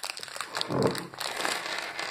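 Rustling and crinkling of candy packaging with many light clicks, and a brief low vocal sound about a second in.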